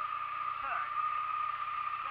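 Motorcycle engine idling with a steady low hum, under a steady high-pitched whine. A voice speaks faintly and briefly just past the middle.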